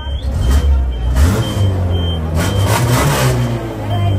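A Volkswagen Santana's AP four-cylinder engine running just after a first-turn start, idling smoothly ('reloginho', like a clock) with a couple of light throttle blips.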